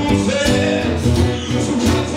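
Live song performance: strummed guitar with a singing voice over a steady beat.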